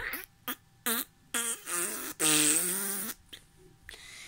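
A child blowing a string of fart-like raspberries with her mouth: about five short, wobbling, voiced sputters, the last and longest lasting about a second.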